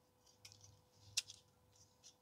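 Faint small clicks and scrapes of thin metal pot-stand pieces and a gas stove burner being slotted together by hand, with one sharper click a little past a second in.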